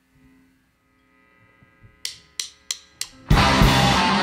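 Four sharp, evenly spaced clicks, a drummer's count-in. A little over three seconds in, a live rock band crashes in loudly with electric guitars and drum kit. Before the count, only faint held tones ring.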